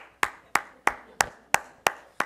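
One person clapping their hands at a slow, even pace, about three sharp claps a second, seven in all.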